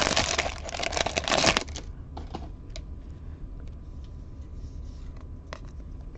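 2021 Bowman baseball card pack being torn open: a dense rustle of wrapper full of sharp clicks for the first second and a half, then quiet with a few light clicks as the stack of cards is handled.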